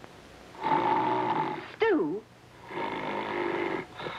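Man snoring: two long snores with a short whistle between them, about two seconds in, that dips and rises in pitch on the out-breath.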